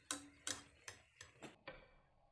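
A metal spoon clicking and tapping against a frying pan, about six light taps in two seconds, as hot oil is splashed over a poori puffing up in the oil.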